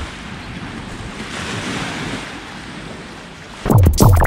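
Small lake waves washing over a pebble shore, with wind on the microphone. Electronic music with a drum-machine beat cuts in suddenly just before the end.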